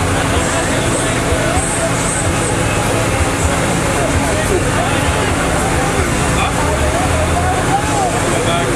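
A car engine idling steadily, with people talking in the background.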